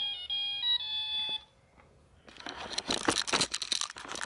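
A toy phone plays a short electronic beeping tune that stops about a second and a half in. After a brief pause comes a stretch of rustling and scraping with light knocks.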